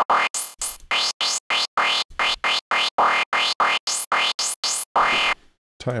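Distorted synth noise lead in Renoise, played as short repeated notes about five a second. Each note has a rising sweep from a bandpass filter moved by an LFO. The run stops shortly before the end.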